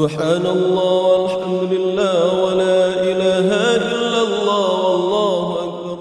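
A melodic vocal chant over a steady held drone, the lead voice moving through wavering, ornamented turns. It fades out near the end.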